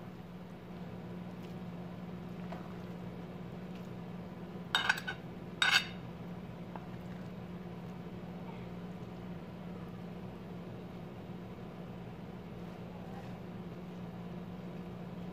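Two sharp clinks about a second apart near the middle, a serving utensil knocking against the dishes as spaghetti is served from the pan onto a plate, over a steady low hum.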